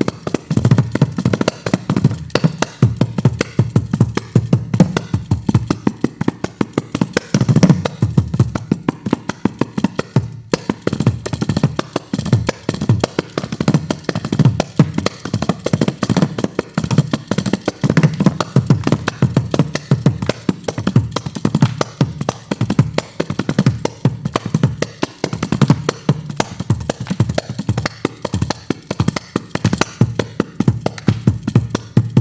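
Kanjira, the South Indian frame drum with a single pair of jingles, played in fast, dense, unbroken strokes, sharp slaps over a deep drum tone.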